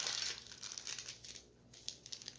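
Old paper packets crinkling and rustling as they are handled and pulled out. The crackling is dense for about the first half second, then thins to scattered crackles.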